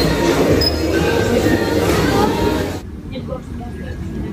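Busy restaurant din: overlapping voices over background music and a low hum. It cuts off suddenly about three seconds in, leaving quieter room sound.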